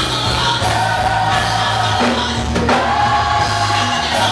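A female gospel soloist and a choir singing together in a live gospel song, holding sustained notes over steady low accompaniment.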